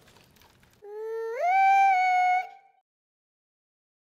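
A single held, pitched tone, about two seconds long, that starts almost a second in, slides up to a higher note about half a second later, holds there, then fades out.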